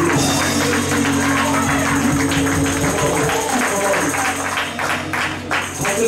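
Church praise-break music: fast rhythmic handclaps and tambourine over sustained keyboard chords, with drums and cymbals keeping a quick beat.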